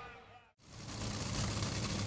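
A Top Fuel dragster's supercharged nitromethane V8 idling at the starting line: a steady low engine note under a hiss. It comes in about half a second in, after a brief drop to silence at a cut.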